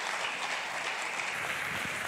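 Congregation applauding steadily, an even clatter of many hands clapping.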